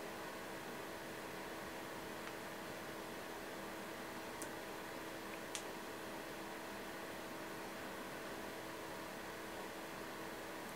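Quiet, steady room hiss with a faint hum in a small room, with two tiny clicks about four and a half and five and a half seconds in.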